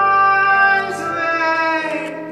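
A male singer holding one long, high sung note live through a microphone, with instrumental accompaniment beneath; the note ends shortly before two seconds in.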